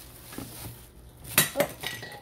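Bubble-wrapped cooking pot and lid handled as they are lifted out of a cardboard box: a low rustle, then two sharp clinks about a second and a half in and a smaller one near the end, with a brief ring.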